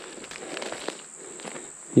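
Footsteps on dry sandy ground strewn with leaf litter, with a faint steady high-pitched insect buzz behind them.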